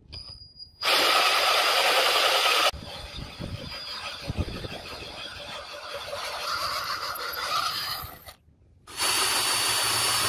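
Cordless drill driving a hole cutter through wet steel plate: loud cutting noise for about two seconds, then a quieter stretch of running with a few low knocks. It stops briefly near the end and then cuts loudly again.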